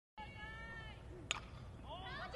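A softball bat strikes the ball once with a sharp crack about a second and a half in. High-pitched voices call out in drawn-out shouts before and after the hit.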